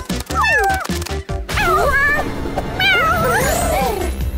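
A cartoon kitten's voice making several short, wordless meow-like calls that slide up and down in pitch, over background music with a steady beat.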